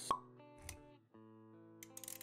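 Intro music with held notes, opening with a sharp pop sound effect. A soft low thump follows, and the music cuts out briefly about halfway through before resuming.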